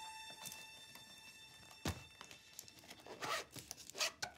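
A single thunk about two seconds in, as of an object set down on a wooden tabletop, followed by paper rustling and light clatter near the end.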